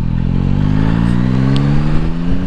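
Motorcycle engine pulling under acceleration, its note rising steadily in pitch.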